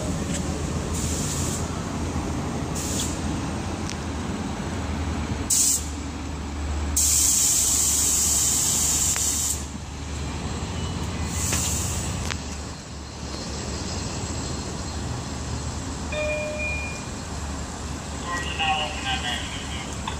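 A Long Island Rail Road diesel commuter train standing at the platform with a steady low rumble, its air brakes letting out bursts of hiss: a short one, then a long loud one lasting a couple of seconds, then another short one.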